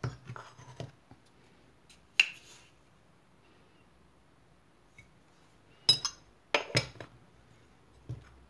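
Metal spoon and ceramic sugar jar clinking as a heaped spoonful of granulated sugar is scooped and tipped into a glass mixing bowl. There are a few sharp clinks: a handful at the start, a louder one about two seconds in, and a few more around six to seven seconds.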